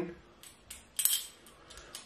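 A few light clicks and one sharper, briefly ringing clink about a second in, from a plastic pipette and a handheld refractometer being handled as a sample is put on for a gravity reading.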